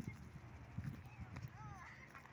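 Quiet footsteps on dry, stony ground, irregular and soft, with a few faint short rising-and-falling calls in the background about one and a half seconds in.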